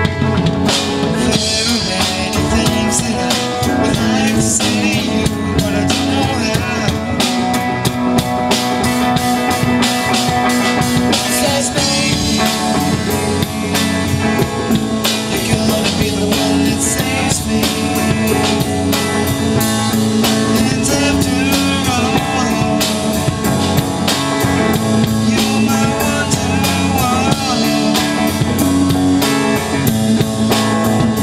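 Rock band playing live, with electric guitar, electric bass and a drum kit keeping a steady beat.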